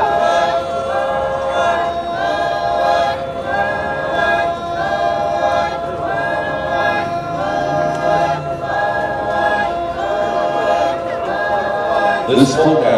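Rengma Naga dancers, men and women, singing a folk song together unaccompanied: a short held phrase repeated about once a second.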